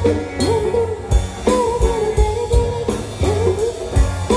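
Live band music amplified through a PA: a singer holding and bending long notes over electric guitars and a drum kit keeping a steady beat.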